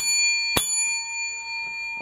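A large metal coin dropped onto a wooden table, striking twice about half a second apart and ringing with a clear, bell-like tone that slowly fades.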